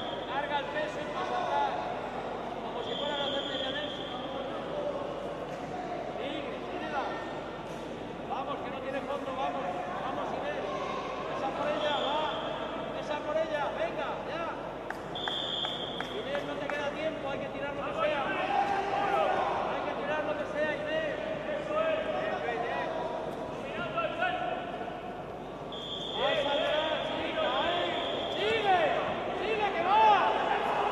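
Voices in a sports hall, calling and talking over one another, with short high referee-whistle blasts: one as the wrestling bout starts, others about 3, 12 and 15 seconds in, and longer, repeated blasts near the end.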